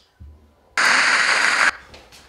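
A burst of static hiss about a second long, starting and stopping abruptly, used as a sound effect for the cut from the wedding speech to the film.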